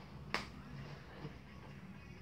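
A single sharp click about a third of a second in, over quiet room tone.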